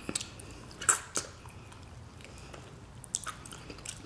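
A person eating stewed oxtail with their fingers: quiet chewing and a few short, wet mouth clicks and smacks, the loudest about a second in.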